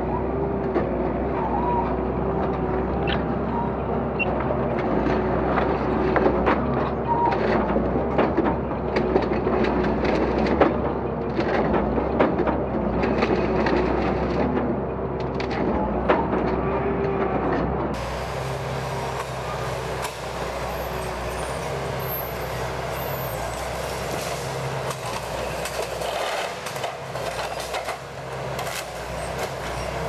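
Forestry harvester's diesel engine running under load with its hydraulics working, while the Naarva EF28 felling head grips thin hardwood stems. The blade shears them with frequent sharp cracks and snaps of wood and branches. A little past halfway the sound changes abruptly to a lower, steadier engine note of the same machine heard from outside.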